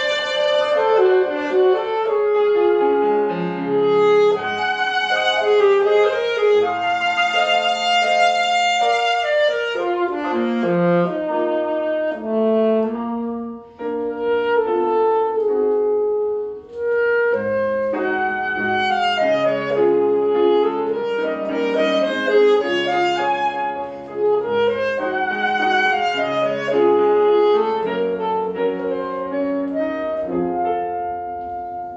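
Alto saxophone playing a lyrical classical melody with piano accompaniment, the line moving through quick runs and held notes, with two short breaks in the middle.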